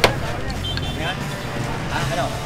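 A sledgehammer strikes a concrete wall once, a sharp crack right at the start, part of a series of blows about a second apart. A steady low engine hum and faint voices follow.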